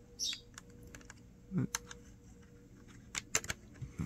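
Faint plastic clicks and scrapes of a USB cable's plug being fumbled against a laptop's side USB port and pushed in, with a quick cluster of clicks a little after three seconds in as it goes in.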